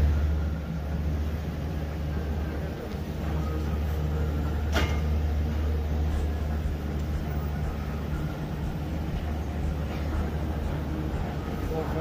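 Gondola lift station machinery running with a steady low hum as the cabins roll through the station, with a single sharp clack about five seconds in.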